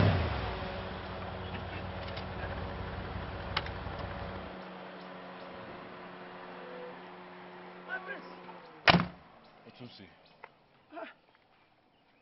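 An SUV's engine running, its low rumble stopping about four and a half seconds in, then a car door shut with one loud slam about nine seconds in.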